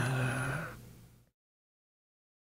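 A synthesizer patch in Spectrasonics Omnisphere sounding a steady pitched tone, likely a chord or held note. It starts suddenly and fades out within about a second and a half.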